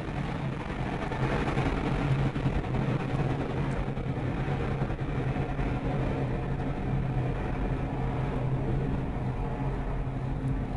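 Soyuz rocket's first stage, its four strap-on boosters and central core burning liquid oxygen and kerosene together, firing as it climbs after liftoff: a steady, continuous rumble heard from the ground.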